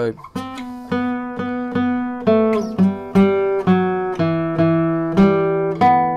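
Nylon-string flamenco guitar played fingerstyle, slowly: a thumb-plucked melody on the third and fourth strings with open-string notes between, in an even rhythm of about two to three notes a second, each note left ringing.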